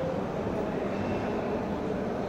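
Steady background din of a large exhibition hall: a constant low rumble of distant crowd noise with no distinct events.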